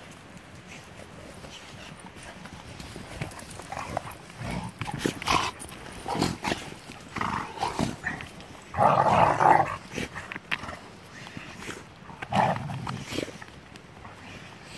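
Dogs playing rough at close range: scuffling and short dog noises in irregular bursts. The loudest burst comes about nine seconds in, as a dog passes right by the microphone.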